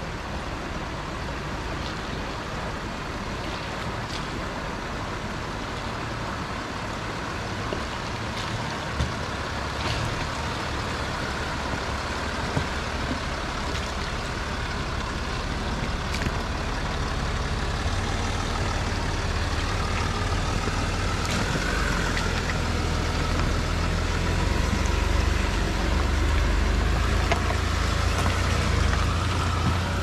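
Land Rover Discovery 4 driving slowly through a rocky stream crossing, its engine rumble growing louder in the second half as it nears and passes, over steady running water with a few short knocks.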